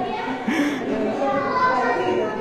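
Indistinct overlapping voices, children's among them, talking and calling out.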